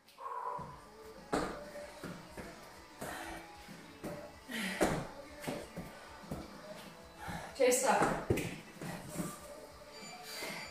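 Rock music playing in the background, with repeated thuds of feet landing jumping lunges on rubber gym matting; the loudest landings come about eight seconds in.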